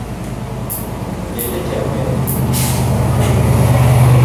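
Low, steady engine rumble that grows louder from about a second and a half in, with a few brief hisses over it.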